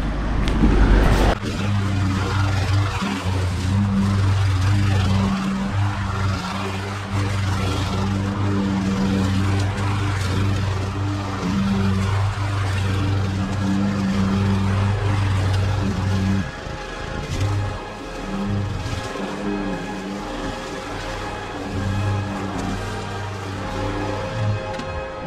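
Petrol engine of a Toro walk-behind mower running steadily while mowing long grass, under background music. The engine drops back about two-thirds of the way through, leaving mostly the music.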